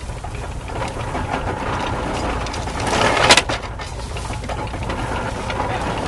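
1910 belt-driven Columbia hay baler at work, its plunger packing hay in one crunching stroke a little after three seconds in that builds up and ends in a sharp crack. Under it runs the steady drone of the Farmall H tractor's engine driving the belt.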